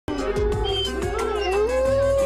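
A wolf howling: one long held note that glides up in pitch about one and a half seconds in, over music with a beat.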